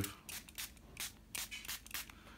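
Spray diffuser misting water onto watercolour paper in a quick run of short, faint hisses.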